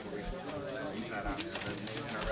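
Indistinct chatter of many people talking at once in a room, with no single voice standing out.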